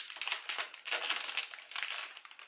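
Clear plastic packaging crinkling and crackling as an eyeliner pencil is handled and pulled out of its packet.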